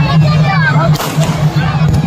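An aerial firework shell bursting with a sharp bang about a second in, over a crowd's shouts and chatter.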